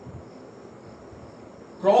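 Faint insect chirping: a high, thin pulse repeating a little under twice a second over room hiss. A man's voice starts near the end.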